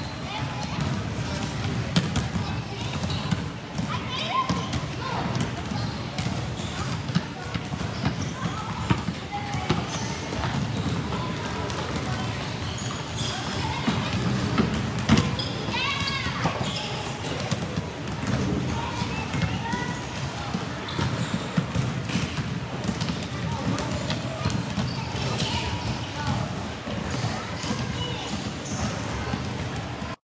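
Several basketballs being dribbled at once on a concrete court, an irregular, overlapping patter of bounces that never stops.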